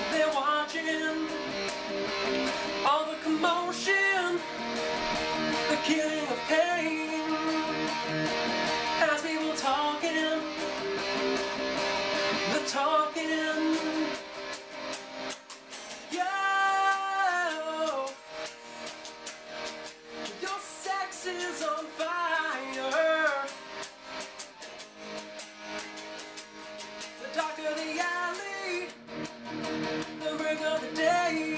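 A man singing in short phrases over strummed chords on a solid-body electric guitar. The playing gets quieter about halfway through.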